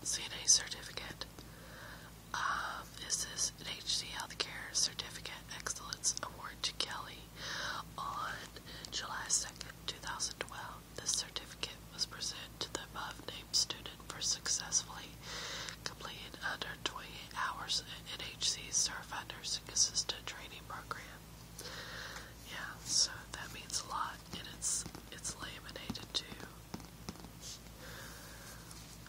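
Whispered speech: a soft, breathy voice talking in short runs of syllables with brief pauses.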